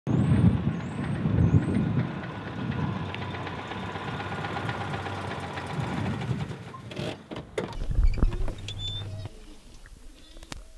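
A Citroën 2CV's air-cooled flat-twin engine running as the car drives up and pulls in to park. There are a few knocks and clicks about seven to eight seconds in, and then the engine cuts off.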